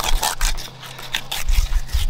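Fillet knife slicing through a freshly caught salmon, making a series of short scraping cuts.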